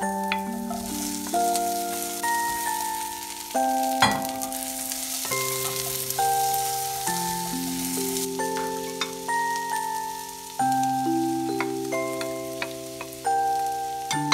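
Zucchini pieces sizzling as they fry in oil with onions in a nonstick pan, stirred with a wooden spatula; a sharp knock about four seconds in is the loudest sound, and the sizzle is strongest in the first half. Background music, a slow melody of held notes, plays over it throughout.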